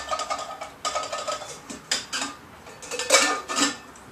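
A teapot, swung and passed from hand to hand, clinking several times, with a short ring after some of the knocks.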